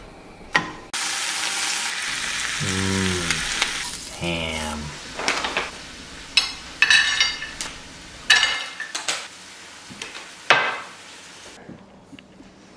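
A sandwich sizzling loudly as it fries in a nonstick pan on a gas stove, a steady sizzle that begins about a second in and fades after a few seconds. Two short low hums follow, then scattered clinks and clatters of utensils and dishes.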